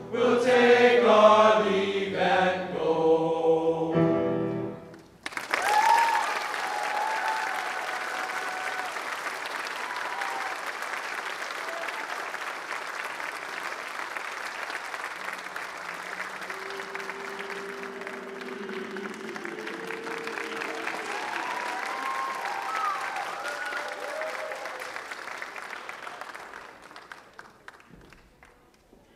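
A men's choir sings its last few chords, ending about five seconds in. Audience applause follows at once, with a few shouts and cheers, and fades out near the end.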